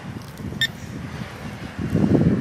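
Low, uneven wind rumble and glove handling noise on the microphone, with one short high beep about half a second in.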